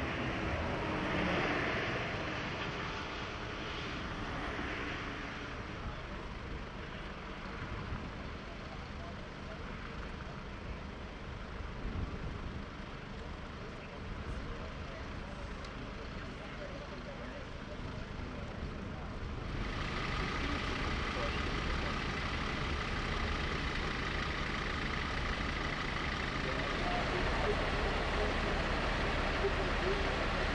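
Steady drone of idling fire-engine and emergency-vehicle engines, with indistinct voices in the first few seconds. About two-thirds of the way in the sound switches abruptly to a slightly louder, steady hum with faint whining tones.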